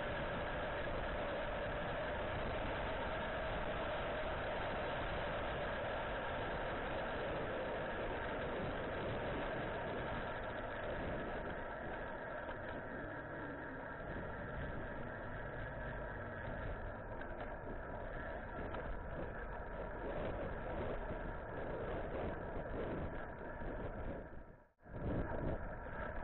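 Steady wind and road rush on a camera carried on a moving bicycle. It eases a little and loses some hiss about halfway through.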